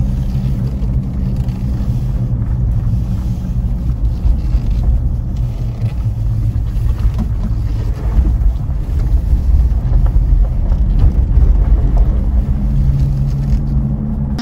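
Ford Endeavour SUV on the move, its engine and tyre noise a steady low drone heard from inside the cabin.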